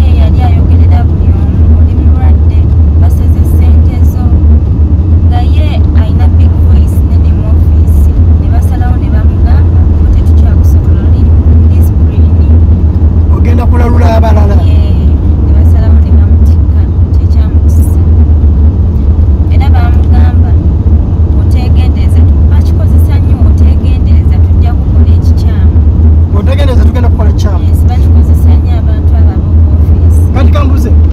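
Steady, loud low rumble of a car on the move, heard from inside the cabin, with a woman's voice speaking over it at times.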